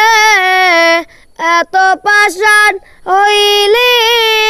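A young boy singing a Bengali folk song unaccompanied: a long held note that breaks off about a second in, a few short sung syllables with brief pauses between them, then another long held note near the end.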